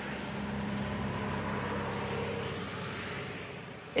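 Played-back field recording of a steady low hum and rumble with faint steady tones, fading in and fading out near the end. It is low-frequency noise traced to the nearby highway's traffic rather than the Taos hum, though the listener finds it very like the hum she hears.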